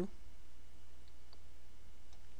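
Two faint computer mouse clicks, about a quarter second apart, over a steady low electrical hum on the recording.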